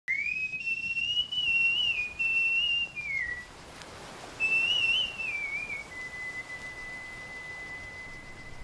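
A high whistled tune: two wavering phrases with a short gap between them, then one long steady note held from about six seconds in.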